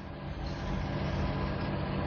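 Steady rushing background noise that slowly grows louder, with a faint low hum under it.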